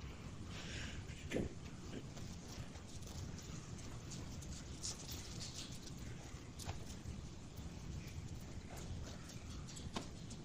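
Faint, scattered clicks and rustles of hands working at the plastic shrink-wrap on a Blu-ray case, over a low steady room hum.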